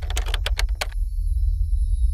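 Typing sound effect: a quick run of about eight keystroke clicks that stops about a second in, over a steady low drone from the background music.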